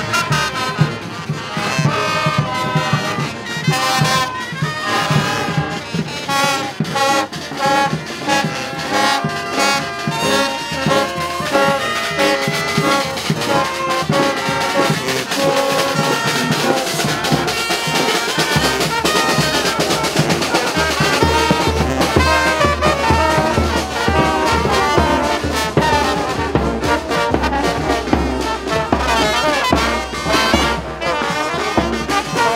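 A marching Mexican brass band playing: trumpets, trombones, saxophones and sousaphones over a bass drum and snare drums. The low bass notes grow stronger a little past the middle.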